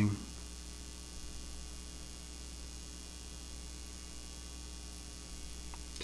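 A steady low electrical mains hum that does not change.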